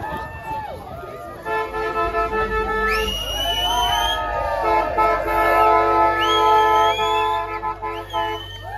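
Car horns honking in two long held blasts, several pitches sounding at once, the first from about a second and a half in, the second from about four and a half seconds in, as a wedding convoy sounds its arrival. People cheer and whoop over them.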